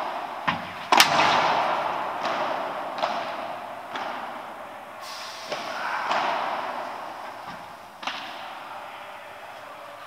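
Padel rally: a padel ball struck by rackets and bouncing off the court and glass walls, a series of sharp pops at irregular intervals of about a second, the loudest about a second in. Each pop trails a long echo from the large indoor hall.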